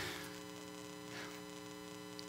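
Steady electrical hum, several level tones held unchanged, over faint room noise.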